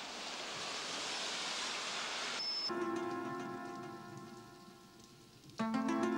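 A rushing hiss swells for about two and a half seconds and cuts off. Then a ringing, harp-like chord sounds and fades, and a second chord is struck near the end. It is a magic-style transition sound effect laid over the video.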